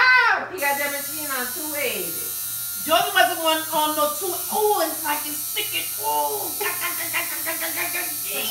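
Electric tattoo machine buzzing steadily as the needle works on skin, starting about half a second in. Wordless vocal sounds from a person rise and fall over it throughout.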